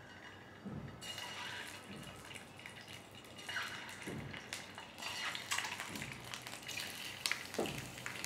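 Hot oil sizzling and spitting in a stainless steel frying pan as peeled, slit boiled eggs are dropped in one by one. Each egg brings a short burst, and the sizzle grows louder as more eggs go in.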